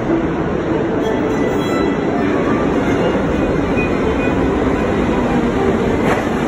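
Subway train running through the station: a loud, steady rumble and rattle of wheels on rails that fills the platform.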